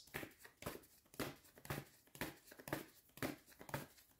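A deck of cards shuffled in the hands, with soft papery swishes of card on card about twice a second.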